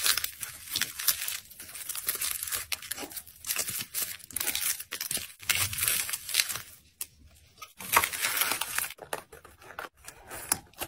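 Clear plastic bag crinkling and rustling as fingers squeeze and open it, in irregular bursts with a short pause about seven seconds in.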